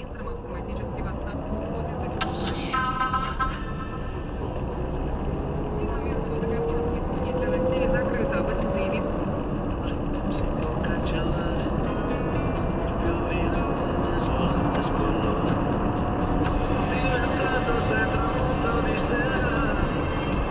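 A car accelerating from near standstill to about 75 km/h, heard from inside the cabin: engine and road noise growing louder, with a whine rising in pitch as it speeds up. The car radio plays underneath.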